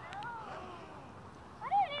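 A person's wordless, wavering vocal sound that rises and falls in pitch, then a few loud spoken words near the end.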